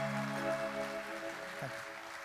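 Audience applauding as the band's last held chord fades out about a second and a half in, at the close of a song.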